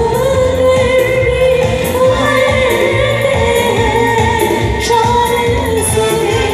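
Live stage band with keyboards and percussion playing an Indian pop song while a singer holds long sustained notes over a steady beat.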